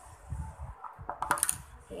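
Handling of a plastic tub of homemade toothpaste-and-salt kinetic sand: soft muffled bumps, then a quick cluster of sharp clicks a little over a second in.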